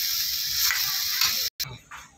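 Onion, garlic and tomato masala sizzling steadily in hot oil in an iron kadhai as it is stirred with a steel spoon. The sizzling cuts off suddenly about one and a half seconds in.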